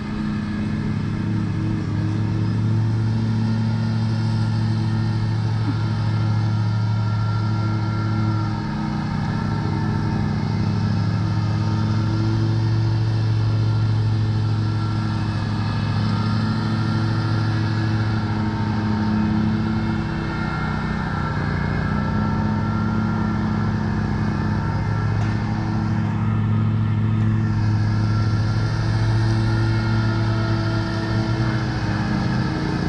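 Riding lawn mower's engine running steadily, its pitch holding with only small shifts.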